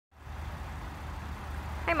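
Steady low rumble with a faint even hiss of outdoor background noise, and a voice saying "Hi" at the very end.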